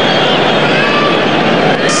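Stadium crowd noise from a football match: a steady roar of the crowd, with thin whistled tones rising and falling over it.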